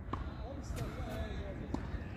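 Faint distant voices over a low steady outdoor background rumble, with two faint short knocks about a second and a half apart.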